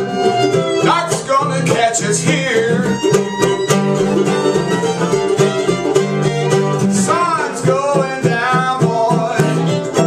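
Acoustic string band playing bluegrass: acoustic guitar, mandolin and fiddle playing together at a steady tempo.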